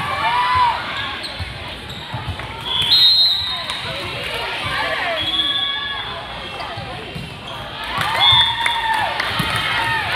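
Youth volleyball rally in a large gym hall: players calling and shouting, the ball thudding off arms and hands, and a few short high squeaks from shoes on the court.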